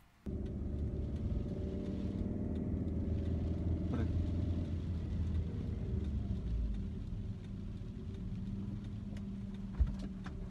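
Car engine and road noise heard from inside the cabin while driving: a steady low hum that starts abruptly at a cut and eases off slightly in the second half, with a single short click about four seconds in.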